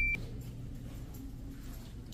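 Low steady room hum, with a high electronic beep cutting off just after the start.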